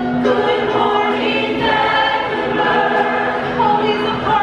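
A mixed-voice chorus singing a Broadway show tune together, holding long sustained notes.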